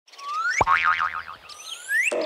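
Cartoon sound effects: a rising whistle, a sharp pop about half a second in, then a quickly wobbling tone like a boing, and a second rising whistle near the end.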